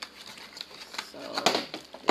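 Clear plastic packaging crinkling and a small cardboard box clicking and tapping as a charger is handled out of it, with several sharp clicks spread through.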